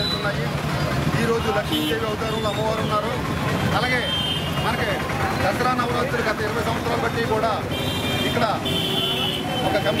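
Speech: a voice talking continuously over low background chatter and noise, with a few thin high tones near the end.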